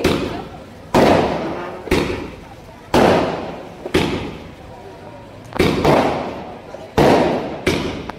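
Aerial fireworks bursting overhead: a sharp bang about once a second, each trailing off in an echo. There are about eight bangs in all, with two quick pairs in the second half.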